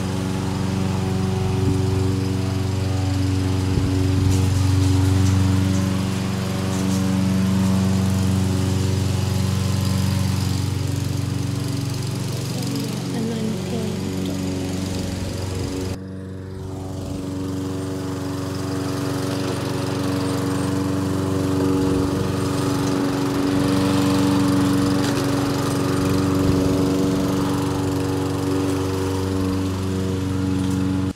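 Toro walk-behind lawn mower's small engine running steadily while cutting grass. The sound breaks off sharply about halfway through and picks up again at once.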